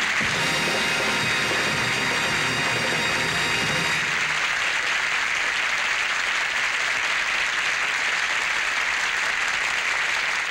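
Studio audience applauding over the last held chord of a show-band song ending. The chord cuts off about four seconds in, and the applause carries on alone.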